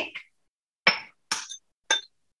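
Three short, ringing clinks of small kitchen items, such as seasoning containers and utensils, being picked up and handled on a countertop.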